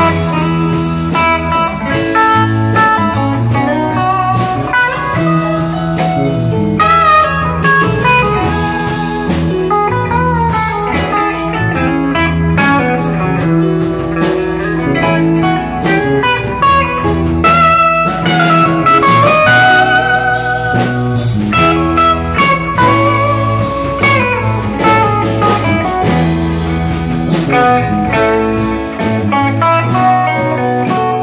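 A rock band playing live: two electric guitars, one playing lead lines with bending, sliding notes, over sustained low notes and drums.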